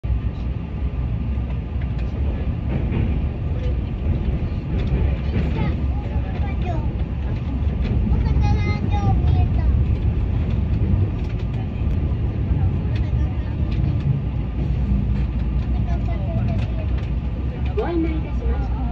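Steady low rumble of a Keihan electric train running, heard from inside the carriage, with faint voices over it.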